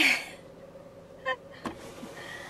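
A woman's breathy laugh, then a short chuckle a little over a second later, over a faint steady hum.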